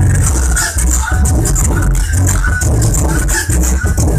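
Music with heavy bass played loud through a woofer driven by a home-built 5.1-channel MOSFET amplifier under test.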